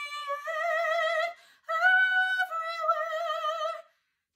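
A woman singing long, sustained soprano notes with steady vibrato in the middle-to-upper voice, in two phrases with a short break about a third of the way through. The tone is breathy and hooty, with a lot of extra breath coming through the sound: typical of singing without a strong full mix.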